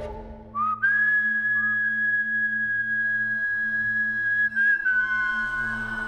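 Background music: one long, high, whistle-like note that slides up into place about a second in and is held for several seconds, over a steady low drone.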